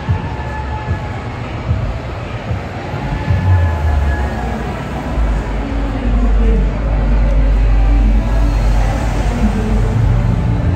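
Busy pedestrian-street ambience: crowd voices and music over the crowd, with a deep, steady rumble setting in about halfway through.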